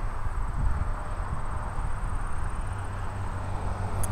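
Wind noise on the microphone outdoors: a steady low rumble with a soft hiss.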